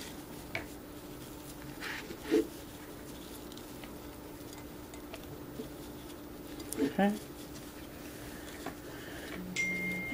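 Faint handling of rope on a glass vase: fingers pressing and rubbing the rope against the glass, with a few light clicks and knocks in the first few seconds, over a faint steady hum.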